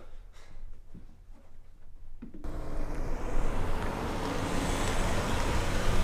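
Near silence in a room for about two seconds, then a car's engine and tyre noise that starts abruptly and grows louder as the car drives up close and pulls in.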